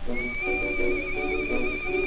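Old acoustic 78 rpm disc recording (Pathé, 1923) of a dance orchestra playing a foxtrot: a high lead note held with a fast vibrato over shorter accompanying notes from the band.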